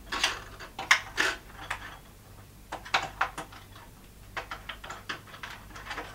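Irregular clicks and light knocks of hard plastic as the battery compartment of a plastic toy house is worked open with a small screwdriver, with short quieter pauses between them.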